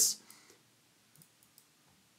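A few faint, short computer mouse clicks, scattered irregularly, after the last word of speech fades.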